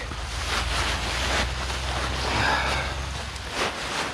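Wind buffeting the microphone, mixed with the rustle of the tent's nylon floor and walls as a man settles down onto it.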